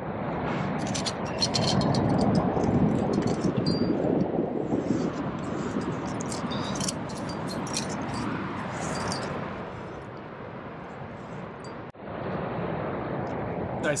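Steady rushing noise on a climber's body-mounted camera microphone, with many light metallic clinks from the climbing gear on the harness while he jams up a finger crack. The sound drops out briefly about two seconds before the end.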